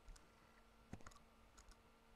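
A few faint computer mouse clicks, one near the start, a quick pair about a second in and a softer one later.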